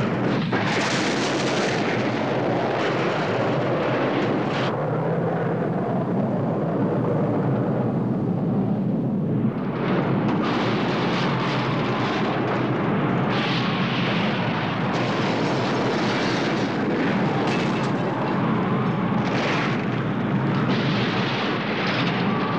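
Nuclear blast wave sound effect: a continuous loud rush of blast wind and rumble, shot through with crackles of flying debris. The high end thins out for a few seconds, and there is a brief dip about nine and a half seconds in.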